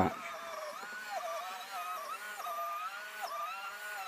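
Electric lawn scarifier running as it is pushed through moss and thatch: a steady motor whine whose pitch keeps dipping and recovering.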